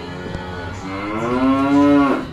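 A single long cow moo that starts softly about half a second in, swells and rises slightly in pitch, and is loudest near the end before breaking off.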